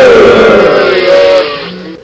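The pre-recorded 'despise' sound effect from a V8 live sound card's effect button: a long, voice-like sound with a wavering, gliding pitch that fades out just before the end.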